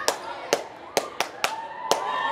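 Hands clapping in a steady rhythm, about two sharp claps a second, with voices behind.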